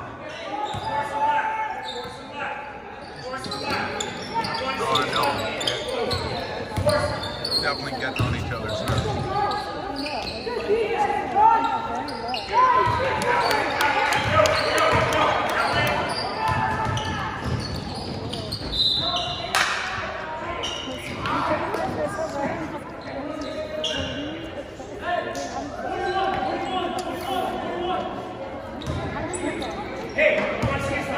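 Basketball game in a large gym: a ball bouncing on the hardwood court among the voices of spectators and players, echoing in the hall, with crowd noise swelling in the middle.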